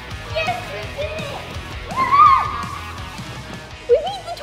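Background music with girls' excited squeals over it, including one long high shriek about two seconds in.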